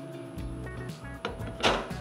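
Background music under a knife slicing through a seared ribeye on a wooden cutting board, with one short loud scrape near the end as the blade cuts through.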